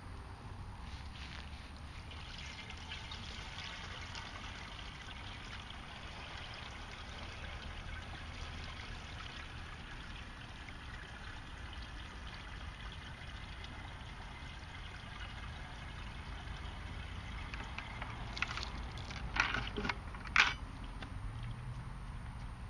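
Lake water poured from a white five-gallon plastic bucket through a cloth pre-filter into another bucket, a steady trickle. Near the end come a few sharp plastic knocks as the emptied bucket is handled and set down.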